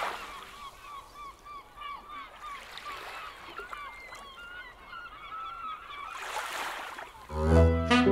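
A flock of birds calling, many short overlapping calls at once. A rush of noise swells and fades about six seconds in, and music with a bass line comes in near the end.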